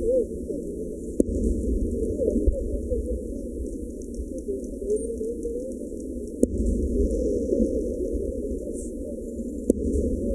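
Aerial firework shells bursting: three sharp booms, about a second in, midway, and near the end, over a continuous low rumble. The sound is heavily filtered, with its middle range cut away, so the booms come out thin and muffled.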